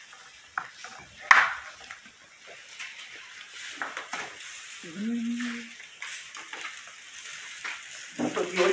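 Beef and fresh sausages sizzling on a grill over a wood fire, a steady hiss, with a sharp clack about a second in and scattered light utensil clicks.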